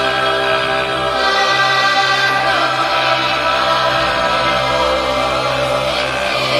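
Music: a choir singing long held notes over a steady low drone.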